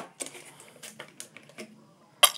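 A plastic bottle picked up off a table with one sharp knock, then faint, scattered light clicks and ticks of handling.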